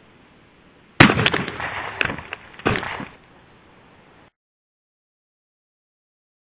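A single rifle shot from a Savage Model 340 in .223 about a second in, followed by water bottles bursting and splashing, with two more sharp knocks over the next two seconds. The sound then cuts out abruptly.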